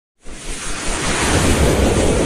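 News-intro sound effect: a rushing whoosh with a deep rumble underneath, cutting in suddenly about a quarter second in and swelling.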